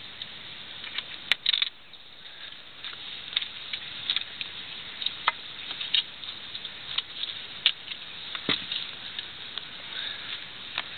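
Hands handling a mesh screen pond cover and its twisted-wire tie: irregular light clicks and scrapes over a steady faint hiss.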